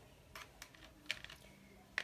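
A few faint, scattered clicks and taps of hands handling a stiff layered paper card on a tabletop.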